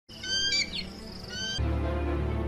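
High-pitched bird calls: several short whistles and a sliding note, then a longer held whistle. Music with a deep, steady bass comes in about a second and a half in.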